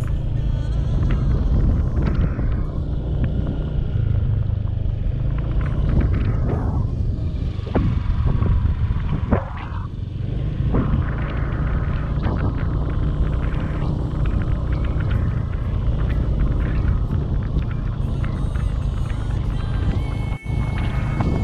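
Steady low rumble of wind buffeting the microphone and a motorbike running along a rough unpaved road.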